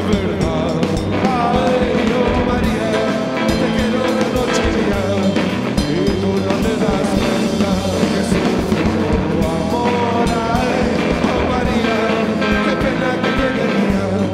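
Live rock band playing loudly: distorted electric guitar and drums, with a male voice singing over them.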